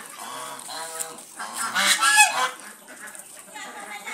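A flock of domestic geese honking in a run of overlapping calls, loudest about two seconds in.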